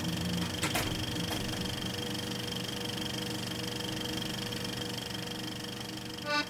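A steady mechanical hum and whir with a few constant low tones over a hiss, and a sharp click under a second in.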